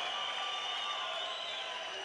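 Arena crowd cheering and shouting as a steady hubbub, with faint held tones underneath.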